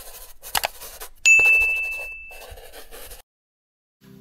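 Sound effects of an animated subscribe-button intro: a few quick clicks and swishes, then a single bright bell ding about a second in that rings out and fades over about a second. The sound cuts off abruptly shortly before the end.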